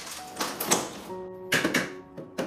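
Sharp plastic clicks and cracks from an electric fan's head and pole being twisted and handled. The loudest comes about two-thirds of a second in, and a quick cluster follows near the end, over background music.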